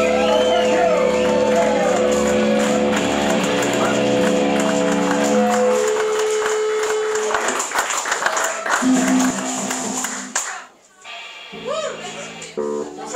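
Live rock band ending a song: guitar and bass hold a final ringing chord under a sung note, dying away about six seconds in. The audience claps and cheers, then the sound cuts off suddenly near the end.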